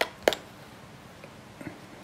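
Two short, sharp clicks within the first third of a second, then quiet room tone.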